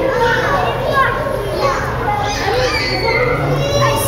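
Many children's voices talking and calling out at once, overlapping continuously, over a low steady hum.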